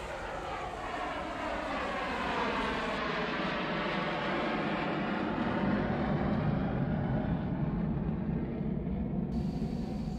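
Jet airliner taking off: the engines run at full power in a steady roar that grows louder over the first several seconds, then holds.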